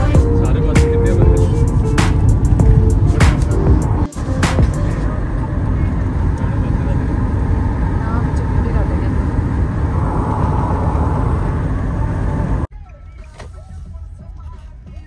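Road and engine noise inside a moving car's cabin, a dense low rumble, with music playing over it. Near the end it cuts off suddenly to a much quieter scene.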